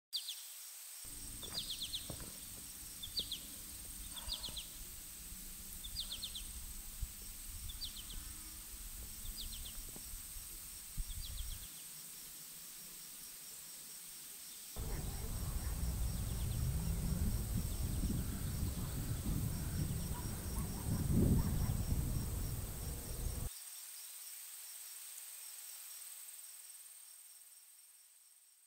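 Outdoor nature ambience: a bird repeats a short chirp about once a second over a steady high insect drone and a low rumble. About halfway through, a louder low rumble comes in for some eight seconds, and then the sound fades away.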